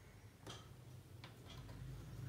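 Faint light ticks and taps as a clear plastic French curve ruler is set down and shifted on fabric over a tabletop, a few scattered clicks over a low hum that grows near the end.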